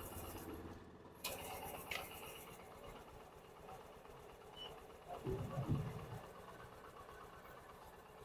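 Honda Shine SP 125 BS6 electric fuel pump running faintly and steadily, pushing fuel out of the disconnected pump outlet into a plastic bottle; the sound gets a little louder about a second in, and a few low knocks come near the middle. The liquid being pumped is petrol contaminated with water, the cause of the bike's no-start.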